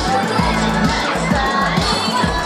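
Pop dance track with a steady beat playing over loudspeakers, while a crowd of young people shouts and cheers.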